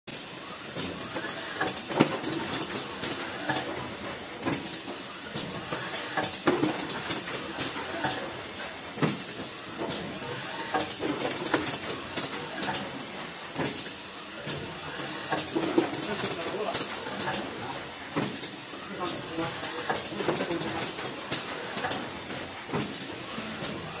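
Automatic tray former, a box-folding machine, running as it folds cardboard fruit boxes: sharp clacks from its folding mechanism about every second over a steady mechanical noise.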